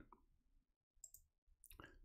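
Near silence, with one faint computer-mouse click about a second in as a point is placed.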